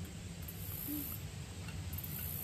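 Faint outdoor background: a low rumble under a very high-pitched hiss that comes and goes about every second and a half, with a brief low hum about a second in.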